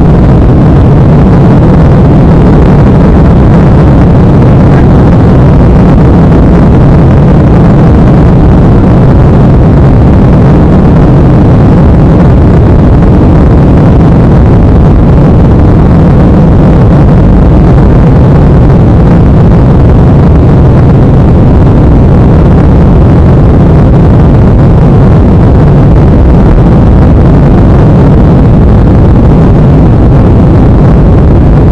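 Jet airliner's engines at takeoff thrust, heard inside the cabin during the takeoff roll: a loud, steady, deep rumble that holds level as the plane lifts off near the end.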